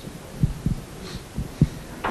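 Handling noise from a handheld microphone: about four short, low thumps in two seconds as the live mic is gripped and moved.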